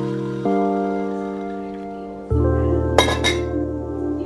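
Soft background music with sustained chords that change twice, and about three seconds in two sharp glass clinks as a glass kettle is set down on a marble counter.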